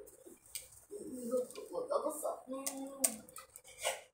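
A person's voice in short low sounds without clear words, with a few sharp clicks, the loudest near the end.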